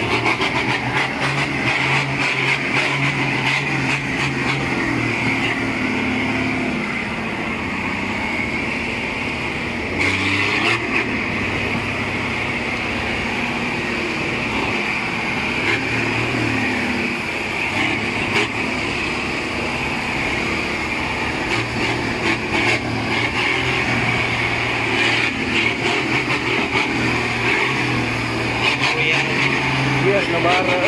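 Nissan Navara pickup's engine pulling under load at low speed, towing an Isuzu Forward truck out of mud on a tow strap; the engine note comes and goes with the throttle. Scattered knocks and rattles from the vehicles jolting over the rough track.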